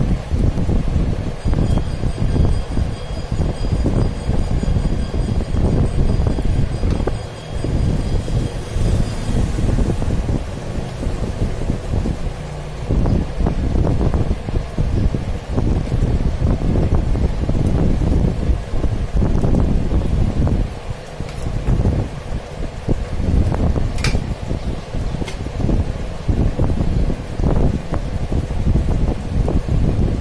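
Uneven, gusting rumble of wind buffeting the microphone. A couple of short clicks come a little past two-thirds of the way through as the loose LCD display module is handled.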